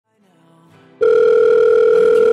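Faint music swells in during the first second. Then a loud, steady telephone ringing tone starts abruptly about a second in: the tone heard while an outgoing phone call rings.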